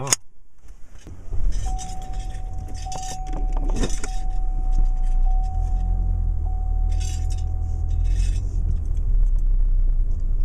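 Car cabin: the engine starts about a second in and runs with a low rumble, while keys jangle in short bursts. A thin steady high tone sounds through most of it, with a few clicks near the middle.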